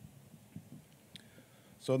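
Quiet room tone with a few faint, short clicks; a voice starts speaking near the end.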